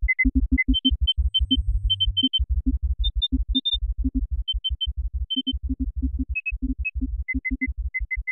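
Experimental electronic music synthesized in SuperCollider: rapid, irregular low electronic pulses, several a second, under short sonar-like high beeps. The beeps step up in pitch in the middle and drop back to their first pitch near the end, and a brief low hum sounds about a second in.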